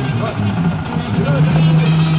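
Serbian brass band (trubači) music playing over the chatter of a crowd, the low brass holding long notes that step from one pitch to another.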